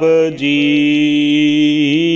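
A man's voice chanting Gurbani in the intoned Hukamnama style: a short syllable, then the "ji" of "Sahib ji" held as one long, steady sung note.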